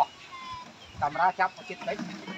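A man's voice speaking a few words after a short pause of about a second.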